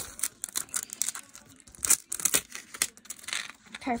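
Clear plastic wrapping being peeled and torn off a plastic surprise-ball capsule by hand: irregular crinkling and crackling, with a louder tearing crackle about two seconds in.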